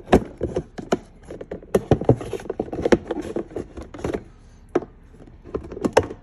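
Flathead screwdriver prying a plastic organizer insert off its retaining tabs in a Ridgid tool box lid: an irregular run of sharp plastic clicks and knocks with scraping between them, as the tabs are worked loose.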